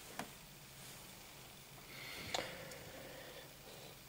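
Quiet handling sounds: a faint click just after the start and another a little past halfway, as a metal gravity-feed airbrush is picked up and brought over.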